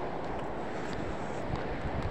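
Steady rushing background noise with no distinct events: the constant noise floor of the narration's microphone, heard in a pause between sentences.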